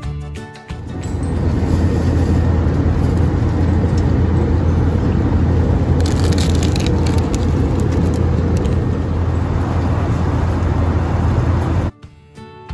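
Steady low drone of a jet airliner's cabin in flight, with a plastic snack wrapper crinkling about six seconds in. Music plays briefly at the start and cuts off within the first second.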